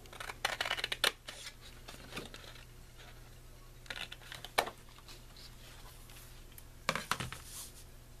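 Scissors cutting through thick 110 lb cardstock in a few short spells of snips, trimming strips off the sheet's edge.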